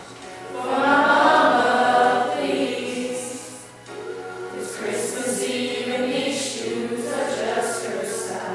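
Mixed youth choir of boys and girls singing a Christmas song together in a church. A loud sung phrase swells about a second in, followed by a brief break just before the next phrase.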